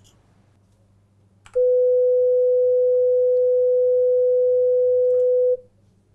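A steady 500 Hz sine test tone, loud and about four seconds long, starting about one and a half seconds in and cutting off sharply, with faint higher overtones.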